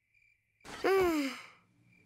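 A young girl's voice-acted sigh, breathy and falling in pitch, lasting about a second. It is a sigh of impatience at a long wait.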